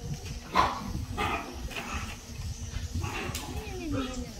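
Several short animal cries, the loudest about half a second in, with a person's voice gliding in pitch near the end.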